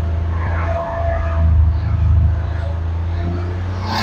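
Tata Intra V20 pickup's 1199 cc engine running while the truck is driven, a steady low drone that dips briefly about a second in and then picks up again.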